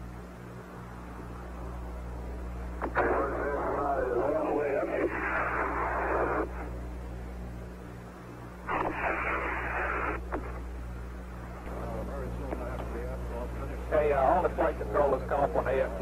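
Mission Control radio loop: a steady low hum with two bursts of hissy, narrow-band radio transmission, each lasting one to three seconds, then a voice coming over the radio near the end.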